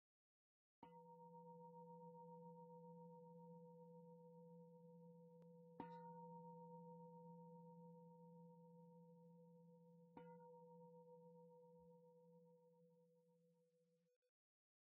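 A faint ringing tone of a few steady pitches, struck three times, about a second in, near six seconds and near ten seconds. Each time it rings on and slowly dies away, fading out at the end.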